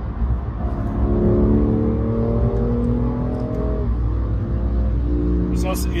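BMW M2 Competition's twin-turbo straight-six pulling under acceleration, heard from inside the cabin over a steady low road rumble. Its note rises slowly for about three seconds, breaks off as if at a gear change, and comes back at a lower pitch near the end.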